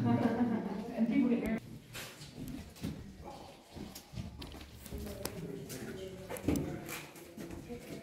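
Indistinct voices of people talking, loudest in the first second and a half and fainter after, with a few sharp clicks.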